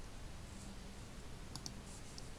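Two quick computer mouse clicks close together near the end, over faint background hiss.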